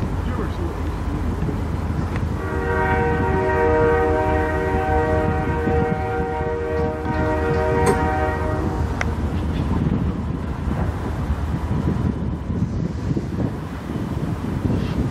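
Freight train's diesel locomotive sounding its multi-note air horn in one long blast of about six seconds, starting about two seconds in, over the steady rumble of the approaching diesel locomotives.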